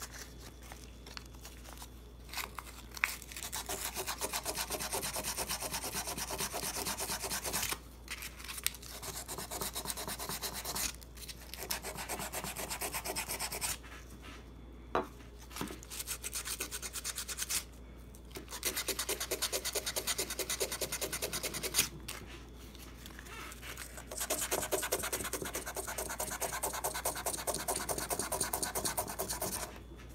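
A small piece of sandpaper scrubbed rapidly back and forth along the steel slide of a Taurus 709 Slim pistol, stripping its black finish down to bare metal. The scrubbing comes in about six bouts of a few seconds each, with short pauses and a few light clicks between them.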